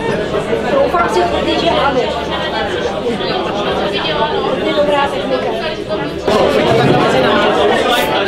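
Many people talking at once around tables: a steady babble of overlapping conversation, stepping up in loudness about six seconds in.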